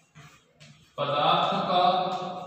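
A man's voice drawn out in one long, steady-pitched syllable starting about a second in, like reading aloud slowly while writing on a chalkboard; faint chalk scratches on the blackboard come before it.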